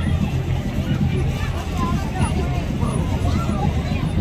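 Spectators chattering while parade vehicles drive slowly past, with a steady low rumble underneath.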